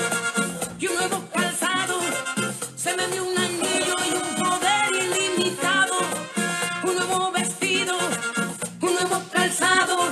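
A Spanish-language Christian worship song: a woman singing over a band with a steady, quick beat.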